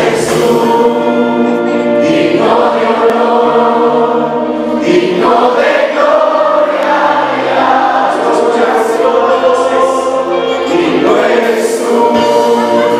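Christian worship music: many voices singing together over a steady instrumental accompaniment with sustained bass notes.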